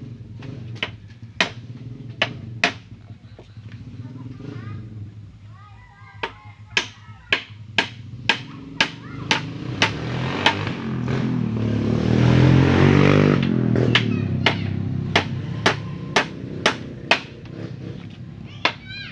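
Claw hammer driving nails into pallet-wood chair slats: a few scattered blows, then a steady run of about two blows a second. Midway an engine swells up, loudest about 13 seconds in, then fades.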